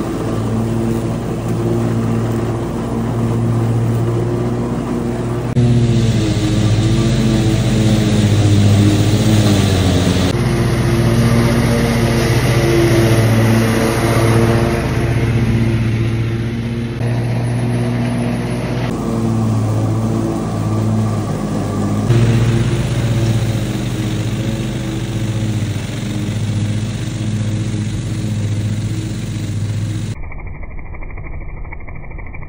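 Ride-on lawn mower's engine running steadily under load while cutting tall, overgrown grass. The level and tone shift abruptly a few times, about 5, 10, 19 and 22 seconds in.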